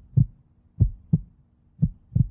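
Heartbeat sound effect: a low double thump about once a second, played as a suspense cue during a countdown.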